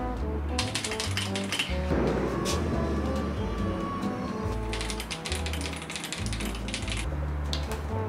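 Background music, with two bursts of rapid clicking from typing on a mechanical keyboard: a short one about a second in and a longer one from about five to seven seconds in.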